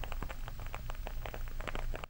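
Wooden candle wick burning and crackling, a quick irregular run of small ticks like a tiny wood fire.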